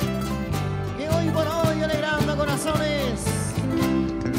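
Live Andean wayliya music from a band: plucked strings over a bass line that steps from note to note, with a gliding melody line above.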